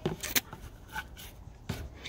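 Light rustling and clicks of a plastic feed cup of rabbit pellets being set down on hay, with a sharp double click about a third of a second in and a few fainter ticks after.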